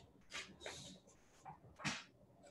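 Faint rustling of printed paper sheets being handled and turned: a few short, soft rustles, then a sharper crackle of paper just before the end.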